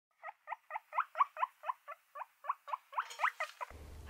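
Guinea pig wheeking: a run of short, rising squeals, about four a second.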